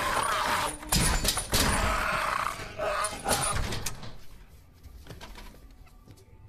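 Horror-film sound effects: a loud, harsh rush of noise with several sharp bangs in the first two seconds, dying away after about four seconds.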